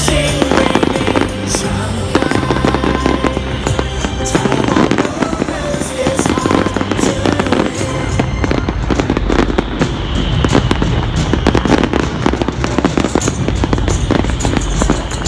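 Aerial fireworks bursting and crackling in rapid, continuous succession, with loud music playing alongside.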